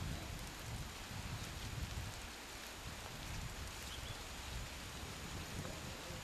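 Outdoor noise: a steady hiss with irregular low rumbling surges, as of wind buffeting the microphone.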